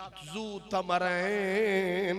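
A man's voice drawing out a word into one long, sung-like held note with a wavering pitch, in the melodic style of an Urdu religious orator.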